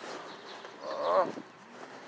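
A deaf man's wordless vocal call, a drawn-out wavering "oh"-like cry about a second in, lasting about half a second.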